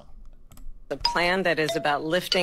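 About a second of quiet with a few faint clicks, then a woman's voice speaking, played back from a video clip.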